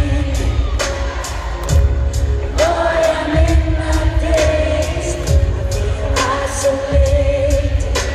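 Live pop vocal group singing long held notes over a band with a heavy low drum beat, picked up by a phone microphone in the audience of a large hall.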